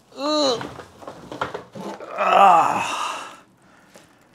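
A man's wordless vocal sounds of effort: a short rising-and-falling hum at the start, then a longer, louder, breathy groan about two seconds in as he lifts a plastic-wrapped chair backrest out of its box.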